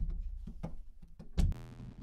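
Drum hits played through the Reflectosaurus delay plugin. For the last half second a buzzing, pitched tone sounds from the plugin's "I feel strange" granular preset.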